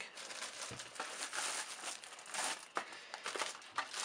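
Clear plastic wrapping crinkling, along with a cloth drawstring bag rustling, as a boxed power supply is pulled out by hand; the crinkles come in irregular bursts with small clicks.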